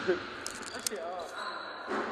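Faint voices of players talking on the court over steady background noise, with a few short, sharp high clicks about half a second in.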